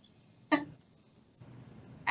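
A single brief laugh from a person about half a second in, then quiet with a faint low hum near the end.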